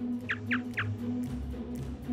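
Background music with a low held drone, and three quick downward-sweeping chirps in the first second: a sound effect for a pallid bat's quiet echolocation calls.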